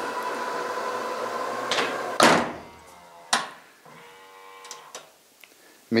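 Power tailgate of a 2020 Ford Explorer closing: the liftgate motor runs with a steady hum and whine, then the gate shuts with a thud about two seconds in, followed a second later by a sharp click as the latch catches.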